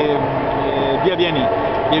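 A man speaking Italian, mid-sentence, over a steady background hum.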